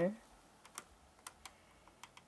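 A few faint, short plastic clicks as a LEGO light brick is pressed in and handled between the fingers.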